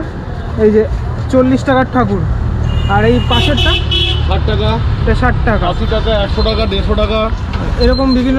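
Street traffic: a vehicle engine rumbles close by and a horn sounds for about a second, roughly three seconds in, while voices talk.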